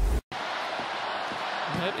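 A short low whoosh from a TV broadcast graphics transition cuts off suddenly. It is followed by the steady noise of a hockey arena crowd, and a man's voice comes in near the end.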